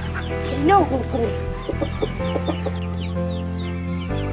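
A chicken clucking a few times in the first second or so, over background music with long held notes; a quick run of high chirps follows in the second half.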